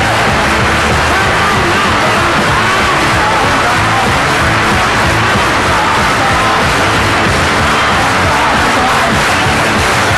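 Rockabilly band playing live, loud and steady, with crowd noise from the audience underneath.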